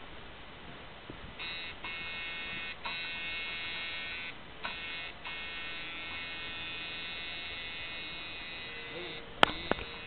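Coil tattoo machine buzzing as it works on skin, starting about a second and a half in and stopping briefly several times before running steadily. A sharp click comes near the end.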